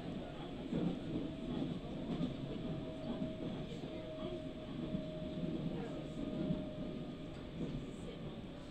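Passenger train running, heard from inside the carriage: a steady low rumble with a thin, steady whine running through it.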